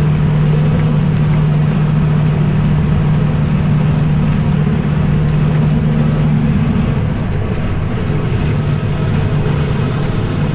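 Massey Ferguson tractor engine running steadily under load, driving a flail topper as it cuts grass, heard from inside the cab. Its low hum eases slightly about seven seconds in.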